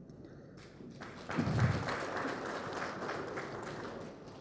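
Audience applauding: a spread of many hands clapping that starts about a second in, peaks quickly and then slowly tapers off.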